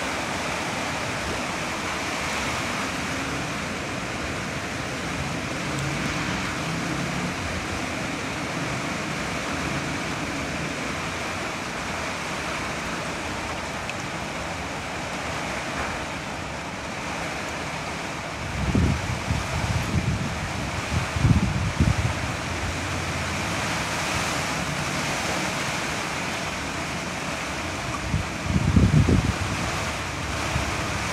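Steady rushing of water. Low rumbling buffets on the microphone come in bouts about two-thirds of the way in and again near the end.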